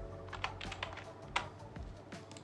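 Computer keyboard typing: a quick run of keystroke clicks, with one louder click about one and a half seconds in.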